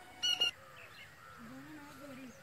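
A bird giving two short, loud, high-pitched honk-like calls in quick succession near the start.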